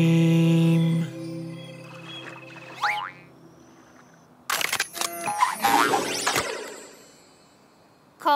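The song's music ends on a held chord that stops about a second in, followed by cartoon sound effects: a short rising glide about three seconds in, then a flurry of sharp clicks and quickly wavering pitched sounds between about four and a half and six and a half seconds.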